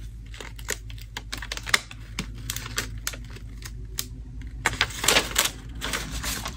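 Paper stickers being handled and pressed onto a journal page: irregular light clicks and rustles, growing denser and louder near the end.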